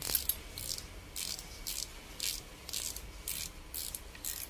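Spinning fishing reel being cranked by hand, its gears and rotor giving a short rasp about twice a second.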